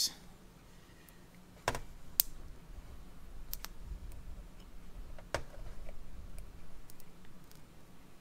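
Hand-cranked wax sprue extruder being worked: a few sharp clicks and knocks from the crank and the metal tool against a stainless steel bench, over a faint low rumble in the middle.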